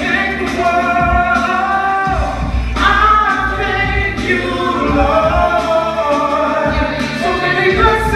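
A small gospel vocal group, men and a woman, singing sustained harmonies without words, the chord shifting every second or two.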